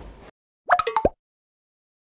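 A short electronic logo sting: a quick run of four or five pitched pops lasting about half a second, starting about two-thirds of a second in.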